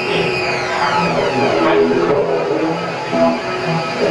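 Live music played through the club PA: a line of short, held low notes moving in steps, with a high sweeping tone that rises and then falls over the first two seconds.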